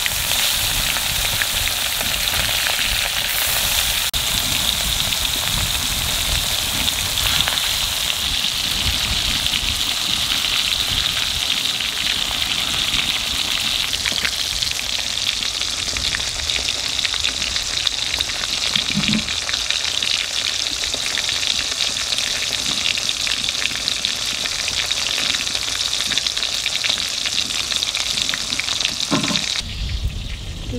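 Turmeric-coated rohu fish pieces frying in hot oil in a kadai: a steady, dense sizzle.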